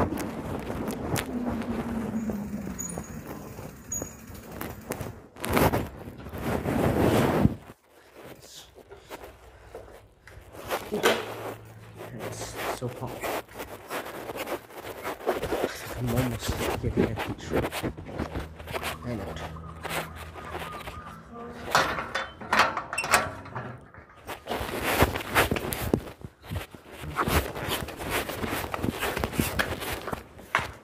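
Rustling and knocking of a phone taped to a shirt as the wearer moves about, with footsteps; loudest for a couple of seconds before dropping off sharply about eight seconds in.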